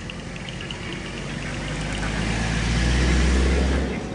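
A motor vehicle driving past close by, a low rumble with tyre and engine noise that swells over about three seconds and drops away suddenly near the end.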